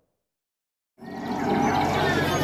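Silence for about a second, then the live sound of an outdoor Reog performance cuts in abruptly and grows louder: music played over loudspeakers with a crowd behind it.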